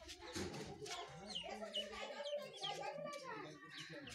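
Birds calling: a run of short, high, falling chirps through the middle, over lower, broken calls and faint voices.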